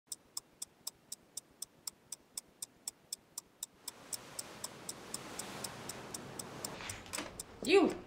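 Steady clock-like ticking, about four ticks a second. About halfway through, a hiss swells up under it and the ticking grows fainter.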